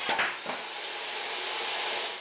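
SawStop jobsite table saw running with its riving knife removed, with a sudden knock right at the start as the board binds between fence and blade and kicks back. The saw's steady running noise carries on after it.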